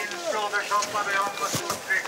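Voices talking among a crowd, not made out as words.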